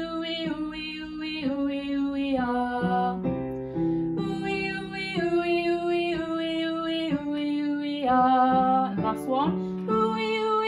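A woman singing a descending 'ooh-wee' vocal warm-up scale, accompanying herself with chords on a digital piano; the notes step about every half second, with a quick upward slide near the end.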